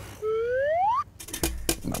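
A single rising whistle glide, lasting just under a second and climbing steadily in pitch, followed by a few short clicks.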